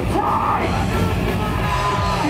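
Loud live heavy metal band playing with distorted guitars, bass and drums, while the vocalist yells one long held scream over it.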